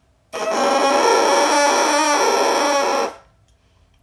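Bassoon reed crowing, blown on its own with the lips almost up to the first wire: a loud, crunchy buzz with several pitches sounding together, held for nearly three seconds and stopping cleanly. A crow like this is a sign of a proper embouchure and a reed that is working decently.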